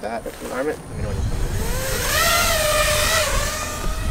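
A 5-inch FPV freestyle quadcopter set up as a pusher, its brushless motors and propellers spinning up about a second in. The whine rises in pitch and then wavers with the throttle as it lifts off.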